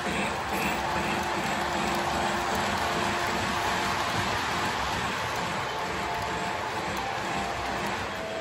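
O-gauge model passenger cars rolling past on three-rail track, a steady running rumble with a regular beat about twice a second.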